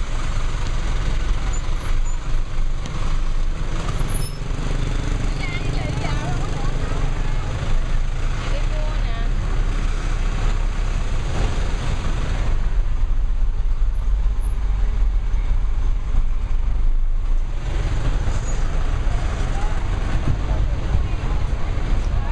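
Busy city street traffic with a steady low rumble of engines from a bus and motorbikes close by. Voices come and go over it.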